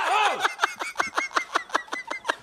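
A man laughing: a brief vocal outburst, then a fast run of short, high-pitched laugh pulses, about eight a second.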